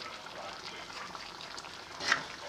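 Cubed pork cooking in its marinade in a wok over medium heat: a steady sizzle and bubble with small pops.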